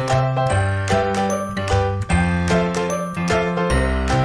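Background music: a bright, chiming melody over a bass line, with notes struck about twice a second.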